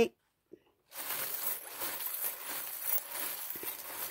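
Rustling with small clicks as a hand rummages through a zippered fabric pouch full of small charms, starting about a second in.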